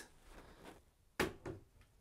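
A plastic bottle knocking against a plastic shower caddy as it is set in: one sharp knock a little past a second in, then a fainter one.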